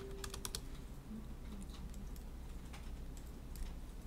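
Computer keyboard typing as numbers are keyed into a software colour panel: a quick run of key clicks in the first half second, then single clicks spaced out over the rest, faint over a low steady hum.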